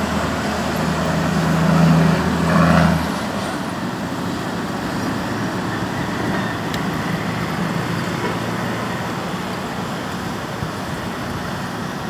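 Steady outdoor traffic rumble. A low engine-like drone sits under it for the first three seconds, swells, then cuts off suddenly.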